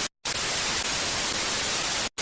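Television static sound effect: an even, fairly loud hiss that cuts out for a split second just after the start, then carries on.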